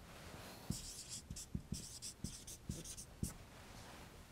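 Marker pen writing on a whiteboard: a run of short, squeaky strokes over about two and a half seconds as a number is written and underlined.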